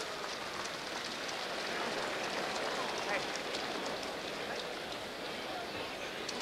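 Boxing arena crowd noise at the end of a round: a steady din of applause and many voices, with no single loud event standing out.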